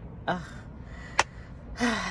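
A woman's brief hesitant 'uh', then a single sharp click about midway, and a short breathy exhale, like a gasp or sigh, near the end.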